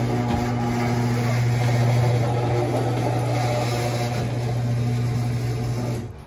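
Electric garage door opener running as it raises a sectional garage door: a steady low motor hum with rumbling from the door and its rollers, cutting off right at the end as the door stops.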